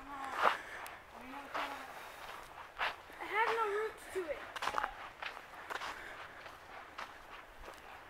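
Footsteps of a person walking up a dirt forest trail, steps landing unevenly, with a short wavering voice in the distance about three and a half seconds in.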